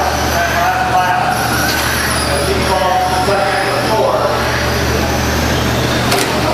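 Radio-controlled short course trucks racing: motor whine rising and falling over a steady low hum, with a voice over it.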